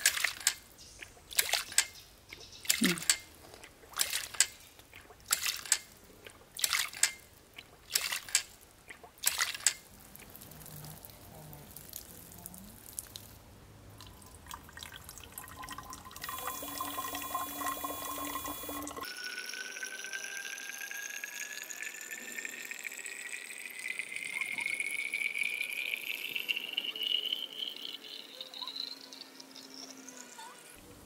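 A 1-inch swing check valve working as a ram pump's waste valve, clacking shut in a fast, regular rhythm with splashing water for about the first ten seconds. From about two-thirds of the way in, water from the pump's delivery hose runs into a bottle, the pitch rising steadily as the bottle fills.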